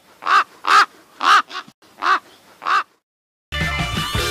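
A raven calling: a series of six harsh caws, each short and arched in pitch, about half a second apart. Music starts near the end.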